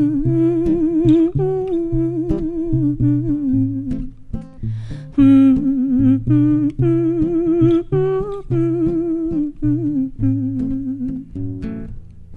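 A woman's voice hums a wordless melody with vibrato into a microphone. She accompanies herself with plucked bass notes and chords on a classical guitar.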